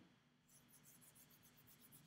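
Near silence: faint room tone with light, rapid rubbing or scratching starting about half a second in.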